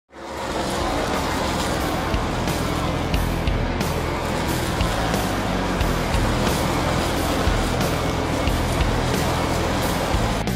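NASCAR stock car engines running at racing speed as a pack goes by, under intro music with a beat.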